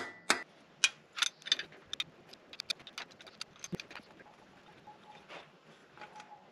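Sharp metal-on-metal clicks and taps, a few a second, from hand tools working a spiral extractor to back a broken-off bolt out of the V8 engine block. They are loudest in the first second, then fainter and sparser, with one dull knock a little under four seconds in.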